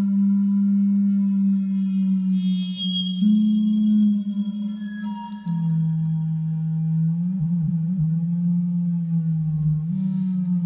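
Electronic synthesizer drone played through guitar effects pedals: a steady low tone with fainter high overtones. It shifts pitch about three seconds in, drops lower about halfway through, and wavers briefly near the eight-second mark as the pedal settings change.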